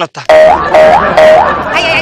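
Comedy sound effect: three quick 'boing'-like tones in a row, each sliding up in pitch and then holding briefly.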